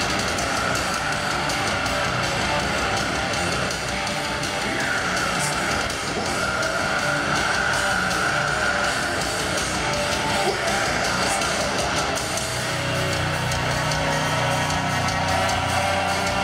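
Live heavy metal band playing, with loud distorted electric guitars running continuously.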